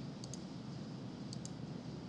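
Computer mouse clicking: two pairs of quick, light clicks about a second apart, over a faint steady room hum.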